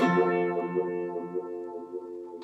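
Electric guitar through a tremolo effect, slightly distorted: a chord struck sharply at the start after a brief silence, ringing on and slowly fading.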